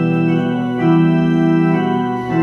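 Electronic keyboard playing slow, held organ-style chords, the chord changing a little under a second in and again near the end.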